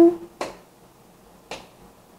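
The last moment of a sung note, then two short sharp clicks about a second apart, spaced evenly like a beat.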